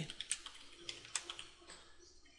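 Computer keyboard typing: a run of light, irregularly spaced key clicks as a word is typed in.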